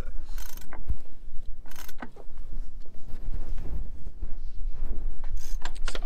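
Yacht winch at the helm station being worked with a winch handle, its ratchet clicking in a few short runs over a steady low rumble.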